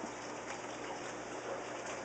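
Steady rush of running water, even throughout with no distinct splashes or knocks.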